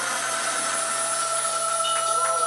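A steady hum and hiss from the band's amplified sound system with a few faint held tones, left ringing after the drums stop.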